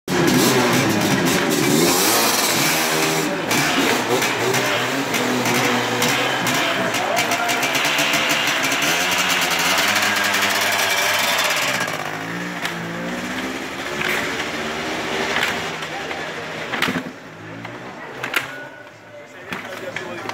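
Several classic enduro motorcycle engines being started and revved, the pitch rising and falling with crackling pops, loud for about the first twelve seconds and then dropping to a quieter run with a few sharp knocks near the end.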